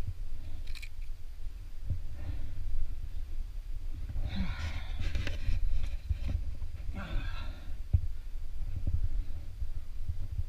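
A climber's two drawn-out effort grunts, about four and a half and seven seconds in, over a constant low rumble on the microphone.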